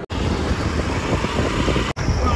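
Steady rush of wind on the microphone with engine and road noise from a motorbike on the move, heard from the pillion seat. The sound drops out for an instant just before the end.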